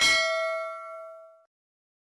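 A single bell 'ding' sound effect for a notification-bell icon, struck once and ringing with several clear tones as it fades, then cutting off suddenly about a second and a half in.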